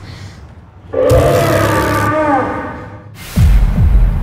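Raptor roar: a loud call with a rough, noisy edge that starts about a second in, lasts over a second and bends downward at its end, followed near the end by a deep, loud sound falling in pitch.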